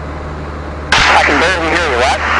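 The Luscombe 8A's engine, a steady low hum heard through the headset intercom. Just before a second in there is a click as the intercom opens: a louder hiss comes in and a voice is heard over it.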